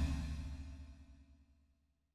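The fading tail of a deep booming music sting, dying away over about the first second, then silence.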